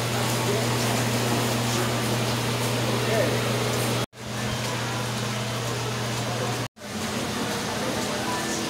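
Steady background noise with a low hum, like a fan or air conditioning, and faint voices in the distance. The sound drops out abruptly twice, about four seconds in and again near the seven-second mark.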